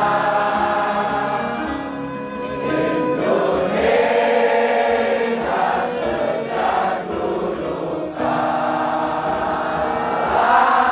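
Many voices singing a slow song together in long, held notes that change in steps.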